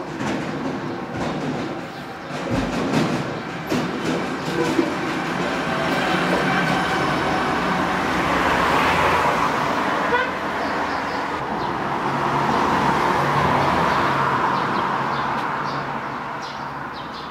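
A motor vehicle running nearby, its engine hum and noise swelling twice, as if passing. A few knocks come in the first few seconds.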